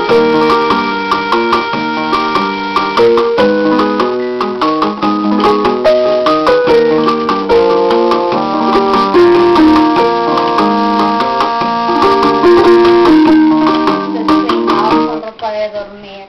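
Portable electronic keyboard played by several children at once, several notes sounding together and changing every fraction of a second. The notes die away about a second before the end.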